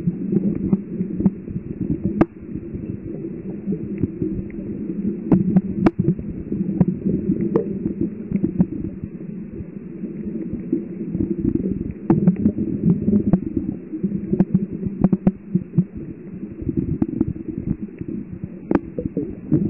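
Muffled, fluctuating low rumble of water moving around a submerged camera, with scattered sharp clicks every second or so.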